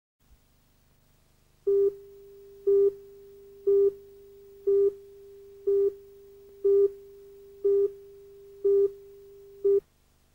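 Videotape countdown leader tone: a steady mid-pitched electronic tone with a louder beep about once a second, nine beeps in all. It stops suddenly just before the picture goes to black.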